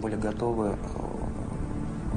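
A man's voice, faint and low in the mix, speaking briefly in the first second over a steady low hum.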